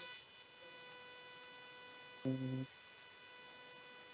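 Faint steady electrical hum in the audio line, one even tone with a ladder of overtones. A man gives a short voiced murmur a little past the middle.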